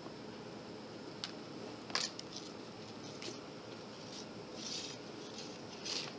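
Faint clicks and rustles of hands handling a boot's shoelaces, coming a second or so apart, the sharpest about two seconds in, over a steady background hiss.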